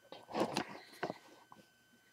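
Handling noise from a plastic Lego model being moved by hand: a short rustle about half a second in, then a sharp click about a second in and a fainter tick after it.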